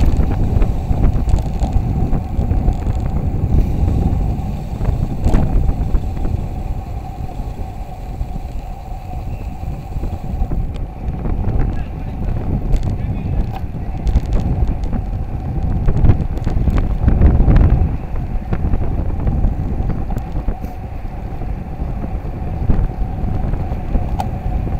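Wind buffeting the microphone of a camera on a bicycle rolling fast downhill, a heavy low rumble that eases off in the middle and swells again a few seconds before the end.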